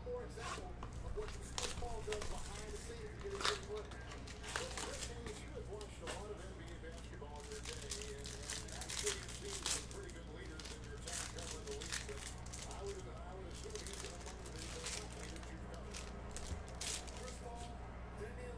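A cardboard trading-card box being torn open by hand, then plastic card-pack wrappers crinkling and tearing as the packs are opened, in many short sharp crackles over a steady low hum.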